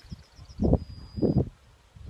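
Outdoor ambience on a phone microphone: two short low rumbles about half a second apart, with a faint high chirping that turns into a brief steady high whistle.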